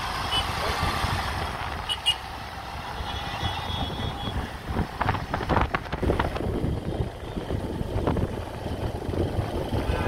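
Motorcycle running along a mountain road, heard from the rider's seat with wind rumbling on the microphone; the wind buffeting comes in harder gusts from about halfway through.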